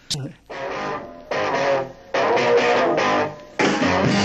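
Electric guitar playing a rock riff in blocks of strummed chords with short gaps between them. The music becomes fuller and louder near the end as bass comes in.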